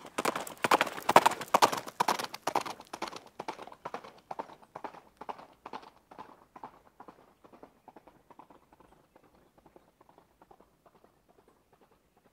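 Horse hoofbeats in a steady clip-clop, about four beats a second, loud at first and fading out gradually until almost gone near the end.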